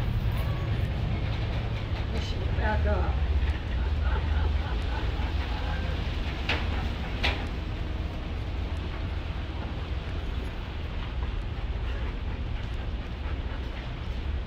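Outdoor background noise: a steady low rumble with faint, indistinct voices early on, and two sharp clicks about six and seven seconds in.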